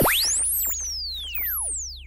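Electronic sound effect of sweeping tones that arc up and fall away in overlapping glides, over a steady low hum, fading near the end.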